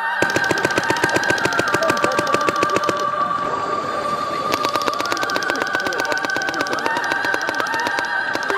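Paintball markers firing rapid strings of shots, many a second, in two volleys with a gap of about a second and a half in the middle, over steady background music.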